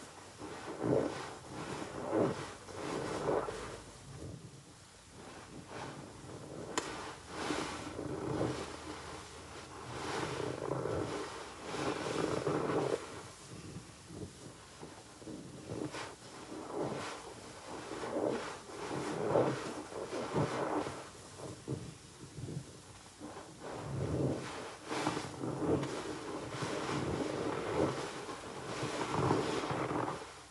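Green epoxy grout sponge squeezed over and over in thick soap suds from Dettol-soaked bar soap and Zote flakes: wet squishing with the crackle of bursting foam, about one squeeze every second or two.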